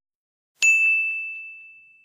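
A single bell ding sound effect for the notification bell: one clear, high ringing tone about half a second in, fading away slowly over about a second and a half.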